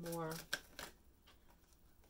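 A tarot deck shuffled by hand: a sharp snap of cards, then a few soft flicks.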